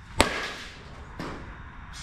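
Softball bat striking a softball once just after the start: a sharp crack with a short ring. A fainter knock follows about a second later.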